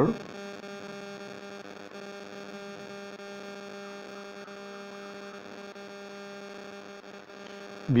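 Steady electrical hum: one unchanging low tone with a ladder of evenly spaced overtones, over a faint hiss.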